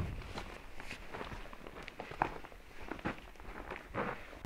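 Boots stepping and scuffing on a gritty dirt floor as someone gets up from a crouch and walks a few paces, in short, irregular steps.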